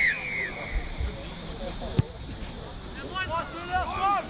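A referee's whistle blast that fades out in the first half second, then one sharp thud about two seconds in: a boot kicking the rugby league ball off the tee at kick-off. Voices are heard behind it.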